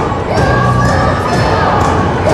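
A group of children yelling together in a charge, a loud, sustained battle-cry shout with many voices at once.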